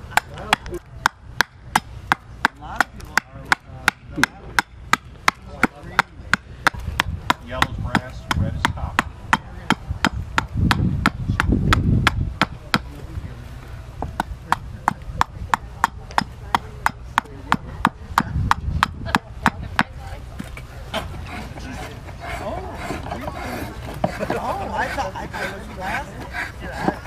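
Carving hatchet chopping a green walnut spoon blank on a wooden stump, sharp strokes about two a second; the strokes become fewer and uneven in the last few seconds.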